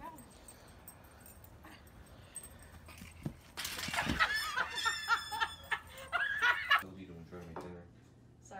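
Goose honking: a run of loud, harsh calls lasting about three seconds through the middle, with a single knock just before they start.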